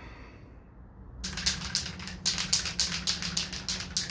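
After about a second of quiet, a run of irregular crackling and clicking handling noises starts, with a steady low hum underneath. It is the sound of plastic sheeting and foam pieces being handled around a car hood laid on a plastic-covered stand.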